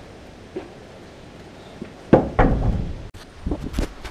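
A loud wooden thump about two seconds in, followed by several knocks and clatters as a timber bed-frame side is put down and handled. Near the end come more bumps as the camera is handled.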